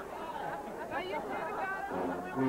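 Indistinct chatter of several people talking at once around a dinner table.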